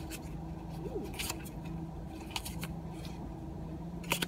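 Pokémon trading cards being handled and slid against one another in the hands: a few soft, sparse clicks and light scrapes, over a faint steady low hum.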